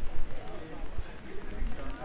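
City street ambience: indistinct voices of passers-by with the low thumps of footsteps on wet pavement.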